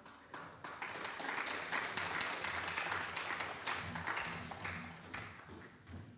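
Audience applauding: dense clapping that builds over the first second, holds steady, then dies away over the last second or so.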